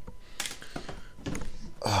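A few light clicks and handling knocks, spread irregularly, with a word spoken near the end.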